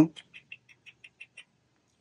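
A person making a quick run of about eight soft mouth clicks, about six a second, as a calling sound to coax sugar gliders. The clicks stop about halfway through.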